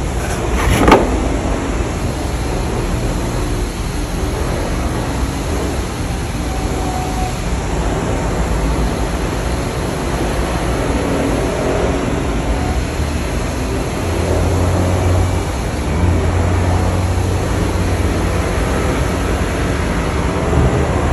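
Steady background rumble of a running motor, with a short knock about a second in and a deeper low hum that comes up about fourteen seconds in and holds to near the end.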